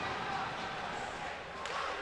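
Low, steady ice-rink ambience during live hockey play: an even wash of arena noise with no distinct hits or shouts.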